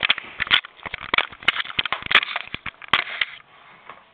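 Irregular crackling and scraping of a handheld camcorder being handled and rubbed close to its microphone, ending abruptly about three seconds in.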